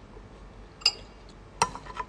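Two sharp clinks of cutlery against a dish, a little under a second in and about a second and a half in, each ringing briefly.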